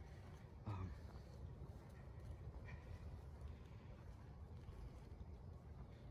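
Near silence: a faint low background rumble, with a short spoken "um" about a second in.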